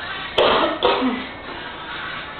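A person coughing twice in quick succession, the two coughs about half a second apart.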